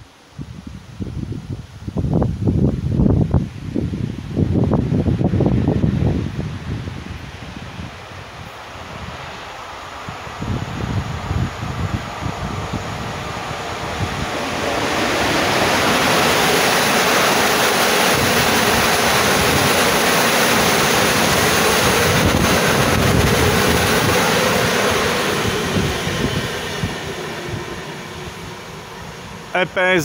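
PKP Intercity EP07 electric locomotive hauling a passenger train past at speed: a steady rush of wheels on rail that builds, stays loud for about ten seconds and fades as the train moves away. In the first few seconds, gusts of wind buffet the microphone.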